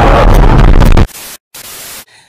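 Very loud, heavily distorted burst of static-like noise, clipped near full scale, that cuts off abruptly about a second in, followed by two short, quieter bursts of hiss: an over-driven meme sound effect.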